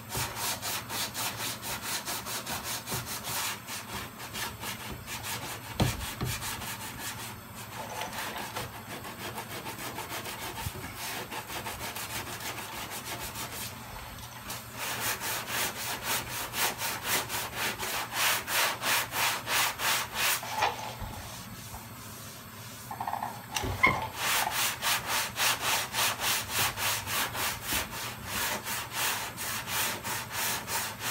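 Car body panel being block-sanded by hand: a sanding block rasping back and forth across the lower door skin in quick, even strokes, about two to three a second, the final blocking before primer. The strokes briefly pause a couple of times, and there is an occasional knock.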